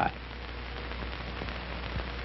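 Steady hiss with a low hum underneath, the noise floor of an old video recording.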